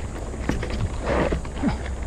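Trek Marlin 6 mountain bike riding over a dirt trail: a steady low wind rumble on the microphone, with rattling knocks from rough ground and a few short falling squeaks.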